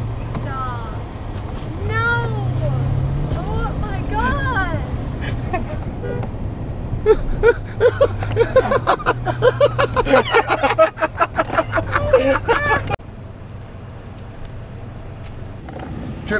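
People laughing inside a pickup truck's cab over the steady low hum of the truck's engine. The laughter breaks into rapid bursts about halfway through and cuts off suddenly near the end, leaving quieter cabin noise.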